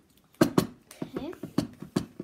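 Indistinct children's voices in short bursts, with a few sharp clicks among them.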